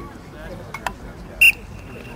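Referee's whistle giving one short, loud blast about one and a half seconds in to start a lacrosse faceoff, its tone trailing off faintly afterwards. Two sharp clicks come a little before it.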